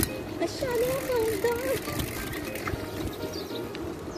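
A high woman's voice singing one drawn-out, wavering phrase, over steady street and riding noise.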